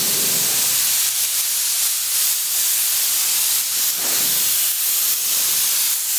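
Compressed-air blow gun with a long metal wand hissing steadily as it blasts sawdust and chips off a router sled table, with a deeper rush near the start and again about four seconds in.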